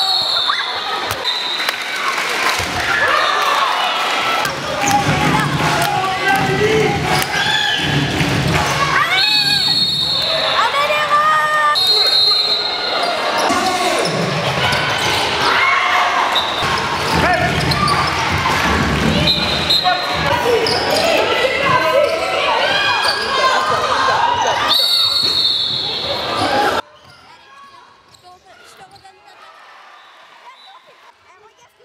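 Handball play in a large sports hall: the ball bouncing on the wooden court amid players' and spectators' shouting, with several brief shrill high tones. The sound cuts off abruptly near the end, leaving only a faint background.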